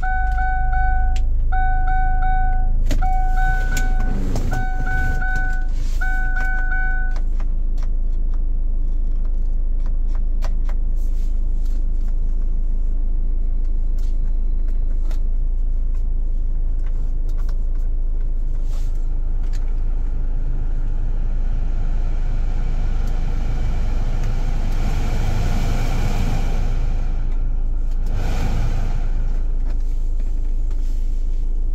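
Daewoo Winstorm's engine idling steadily, heard from inside the cabin as a constant low rumble. A warning chime beeps five times at even intervals over the first seven seconds. In the last stretch the car radio is heard faintly.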